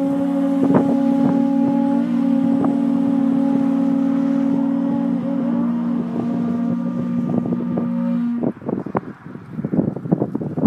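Several conch shell trumpets (pū) blown together in one long held blast on two or more steady pitches, cutting off about eight and a half seconds in. Wind buffets the microphone throughout.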